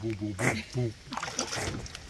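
A man's voice drawing out a word, followed by scuffing and rustling handling noise close to the microphone.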